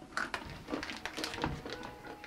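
Crunchy chili-coated peanuts being chewed: soft, irregular crunches and clicks close to the microphone.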